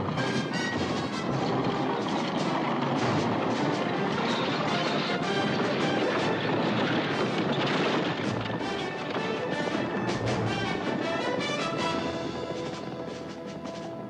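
Film score music over a dense din of battle sound effects: stampeding horses and crashing impacts. It fades somewhat near the end.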